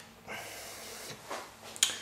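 Soft handling noise, then one sharp plastic click near the end as a LEGO minifigure and its small plate are handled.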